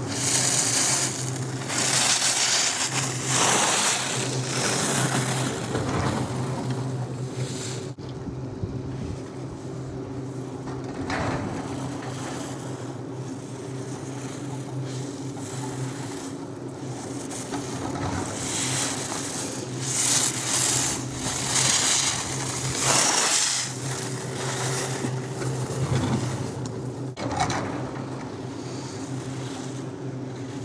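Skis scraping and swishing on hard-packed snow through slalom turns, a hiss that swells and fades about once a second in spells, over a steady low mechanical hum.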